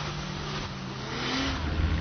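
A vehicle engine running, a low steady drone that grows stronger about one and a half seconds in.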